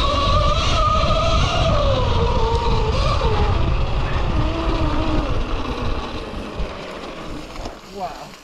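Cake Kalk OR electric motocross bike riding a rough dirt trail: the electric motor's whine wavers with the throttle over a heavy low rumble of riding noise. The whine's pitch falls as the bike slows, and the sound fades near the end as it comes to a stop.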